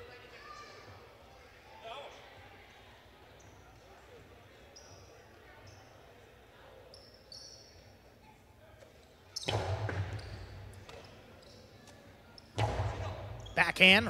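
Jai-alai pelota striking the court hard twice, about three seconds apart, each hit ringing on in the big hall, over a faint murmur of voices.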